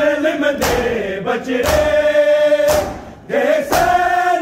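Men's voices chanting a noha lament together, one long held note in the middle, with the crowd's hands striking bare chests in unison (matam) about once a second.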